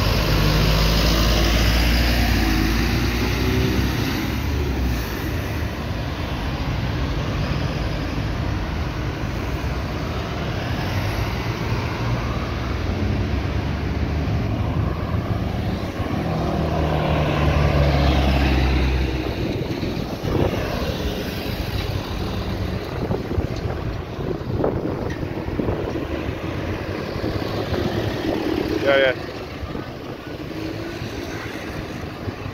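Roundabout traffic: a diesel public bus pulls away close by with a loud low engine rumble over the first few seconds, then cars pass with steady engine and tyre noise. A second loud engine rumble passes just past the middle, and a brief rising tone sounds near the end.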